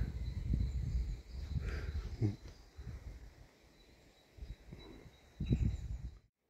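Low, uneven rumbling of wind and handling noise on a handheld camera's microphone, with a soft thump about two seconds in and another near the end. It turns much quieter after about three seconds.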